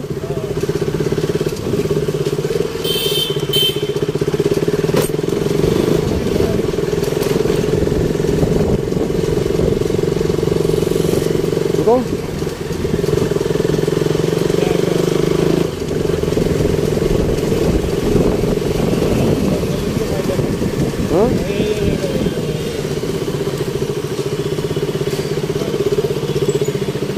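A two-wheeler's engine running steadily while riding through city traffic, with a couple of brief dips in level. A short high-pitched beep sounds about three seconds in.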